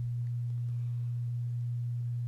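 Steady low electrical hum on the recording: one unchanging low tone, with nothing else over it.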